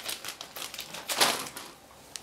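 Bagged plastic model kit sprues rustling, crinkling and clicking as they are shuffled in the cardboard kit box, with a louder rustle just over a second in.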